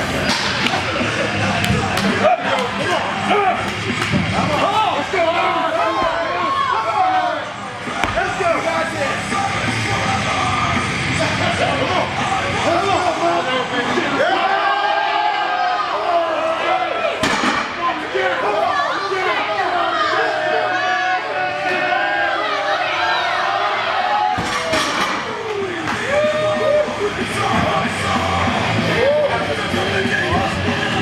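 Rock music over a gym crowd yelling and cheering a heavy deadlift, with a few sharp knocks.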